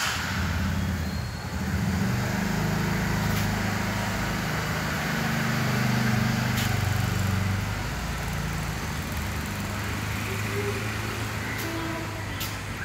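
A motor vehicle's engine running steadily with a low hum, easing off after about eight seconds, with a few faint clicks.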